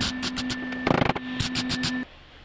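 MIG welder laying short tack welds on thin sheet-metal body panels: irregular bursts of crackling and sputtering, the loudest about a second in, over a steady hum from the welder.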